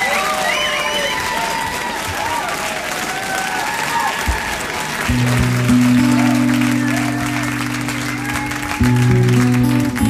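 Live concert audience applauding. About five seconds in, the song's introduction comes in under the applause with low held notes that change pitch about four seconds later.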